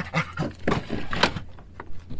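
A dog scrambling up into a van's cab: an irregular run of claw clicks and knocks on the step and floor, louder in the first second.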